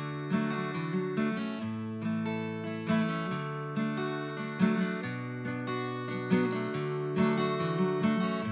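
Background music: strummed acoustic guitar chords, a fresh strum about every second over sustained low notes, with no voice.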